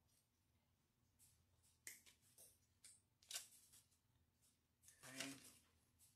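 Faint rustling and a few sharp clicks of geranium stems and greenery being handled and trimmed, with a brief low hum from the person about five seconds in.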